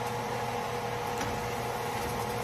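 Steady electrical hum with an even hiss: a kitchen appliance or fan running.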